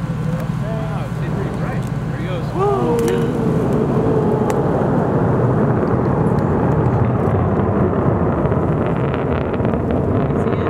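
Delayed sound of a Delta II rocket's engines reaching a distant viewing site after liftoff. It is a steady, loud rumble that grows louder about two and a half seconds in and then holds. A few voices call out in the first few seconds.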